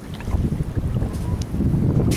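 Wind buffeting the microphone with a steady uneven rumble, over small wavelets lapping at a sandy shore.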